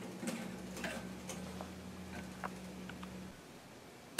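Faint scattered light ticks and clicks over a low steady hum, which cuts off a little after three seconds in.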